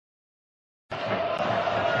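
Dead silence for about the first second, an edit gap, then the steady crowd noise of a football stadium with a held drone running through it.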